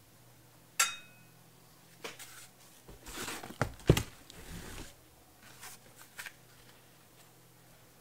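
Handling of the CRT's packaging: a sharp knock about a second in, then rustling and scraping as foam inserts are pulled out of the box, with a louder knock near the middle.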